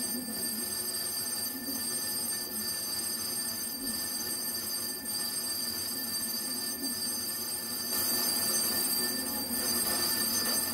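Metal lathe running as a cutting tool trims the side of a spinning model-engine flywheel. It makes a steady, high-pitched machine whine with a soft pulse about once a second, and grows slightly louder near the end.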